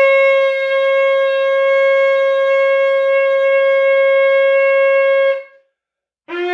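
A shofar blown in one long, steady note that breaks off about five and a half seconds in.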